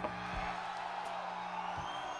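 A lull right after a rock song ends on a soundboard recording: a low steady amplifier hum and faint lingering tones from the stage rig, with a brief click at the start.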